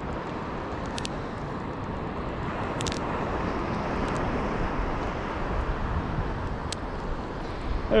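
Steady wash of breaking surf and wind on the microphone, with a few faint high ticks.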